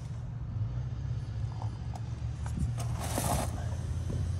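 Steady low hum of the 2011 Chevrolet Cruze's Ecotec four-cylinder engine idling quietly, heard from beside the open rear door. A short rustle about three seconds in.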